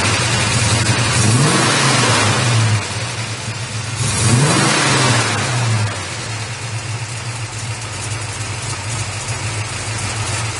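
1970 Dodge Charger's 383 four-barrel V8 running, blipped on the throttle twice, about a second and about four and a half seconds in, each rev rising and falling back. It then settles to a steady idle.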